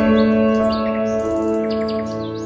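Calm, slow piano music, with a new chord sounding at the start and holding, over birds chirping in short repeated calls.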